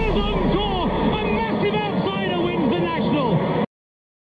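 A person's voice, cutting off suddenly near the end.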